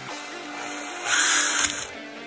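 Power drill boring through the thin steel end of a tape-measure blade: a short, loud burst of high-pitched grinding about a second in, lasting under a second, over steady background music.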